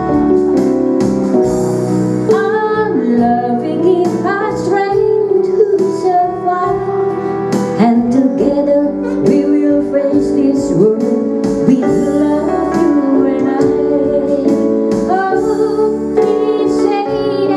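A woman sings a slow pop ballad into a microphone over Yamaha electronic keyboard accompaniment. The keyboard plays alone at first, and her voice comes in a couple of seconds in.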